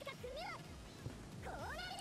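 Faint anime dialogue played in the background: a Japanese character's voice in two short phrases whose pitch rises and falls.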